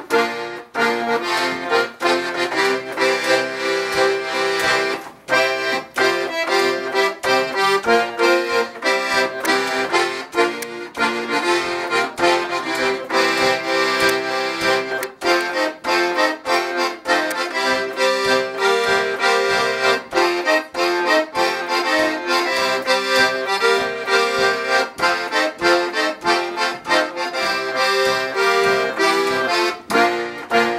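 Paolo Soprani piano accordion played solo, a melody on the piano keys over a rhythmic bass-and-chord accompaniment from the left-hand buttons, with no break in the playing.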